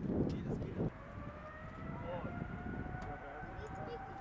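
A rumbling burst of noise in the first second, then a Boeing 777's twin turbofan engines whining, with steady tones that slowly rise in pitch as the jet accelerates down the runway on its take-off roll.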